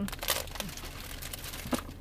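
A clear plastic bag crinkling as it is handled. The crinkling is loudest in the first half second and comes back in a few short rustles later. A steady low car-cabin rumble runs underneath.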